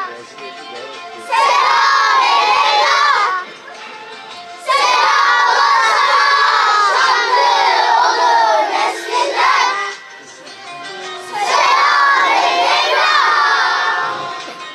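A children's choir chanting loudly in unison into a microphone, in three phrases separated by short pauses.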